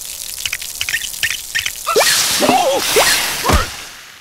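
Cartoon sound effects of water squirting and dripping: a run of small sharp drips, then quick swooshing sweeps in pitch in the second half, the last one diving down steeply.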